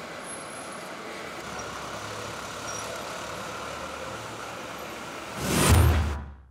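Steady city street noise of traffic and passers-by. Near the end it is overtaken by a loud whoosh with a low boom: the news programme's transition sound effect.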